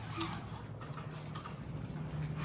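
Soft clicks and light rustles of papers being handled at a lectern, over a steady low hum in the room that grows a little stronger in the second half.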